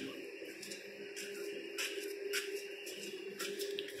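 A faint steady hum with a few soft clicks and rustles from a handheld camera being moved.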